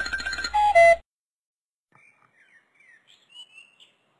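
Electronic cartoon sound effect: a held buzzy tone that steps down in pitch and cuts off about a second in. Faint high chirps follow near the end.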